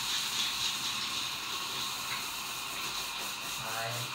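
Running water giving a steady hiss, with a voice starting to sing again near the end.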